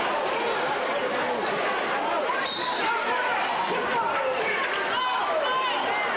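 Spectators in a packed gymnasium talking over each other during a basketball game, with a basketball bouncing on the court.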